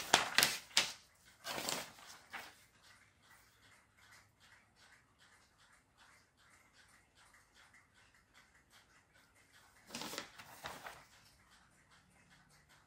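Sheets of printed paper rustling and crackling as they are picked up and moved: a cluster of rustles in the first two seconds, then quiet, then another burst of rustling about ten seconds in.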